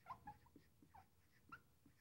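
Very faint, short squeaks of a dry-erase marker writing on a whiteboard, a few separate strokes, otherwise near silence.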